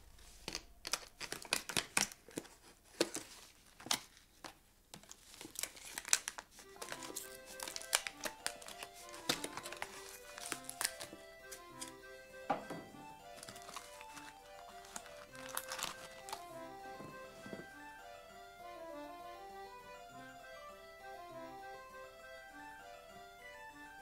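Crinkling and sharp clicks of a plastic parts bag, paper and small hard parts being handled with a knife, busiest in the first few seconds and dying away after about seventeen seconds. Background music comes in about seven seconds in and carries on alone at the end.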